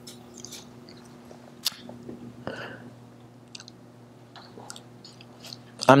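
Quiet room tone: a steady low hum with a few scattered faint clicks.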